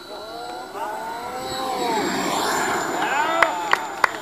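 Radio-controlled model jet making a low fly-past: a whine that rises and then falls in pitch, with a rushing noise that swells and is loudest about two seconds in. A few sharp clicks and brief voices near the end.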